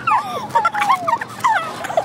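Several young women laughing together: high-pitched giggles and squeals that swoop up and down in quick broken bursts.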